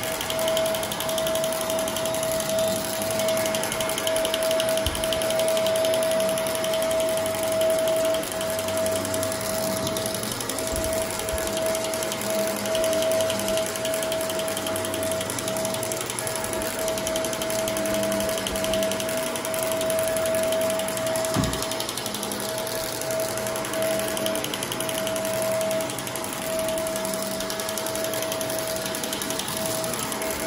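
Upright vacuum cleaner running over a heavily soiled carpet, its motor holding one steady whine while grit and debris crunch up through the nozzle. A few sharp knocks break in now and then.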